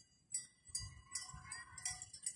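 Short, high-pitched chirps from small animals, repeating a few times a second, over a faint steady high tone.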